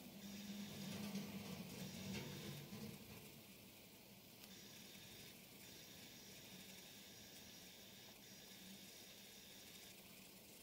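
Faint scratching of a coloured pencil shading across paper, in long stretches of light strokes over a low steady hum. It is a little louder in the first few seconds.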